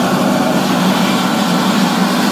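Large electric water pump running steadily as it supplies the spray for a vehicle rain-leak test, a loud, constant hum.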